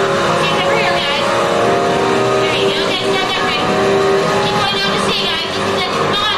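Loud, steady rushing of a staged rain-storm effect, water pouring onto a rocking ship set, with a low sustained tone under it and voices calling out over it.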